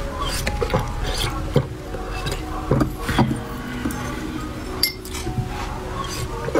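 Close-miked wet sucking and slurping of jelly drink from test-tube-shaped tubes, broken by irregular sharp clicks and clinks of the tubes, the strongest about a second and a half, three and five seconds in.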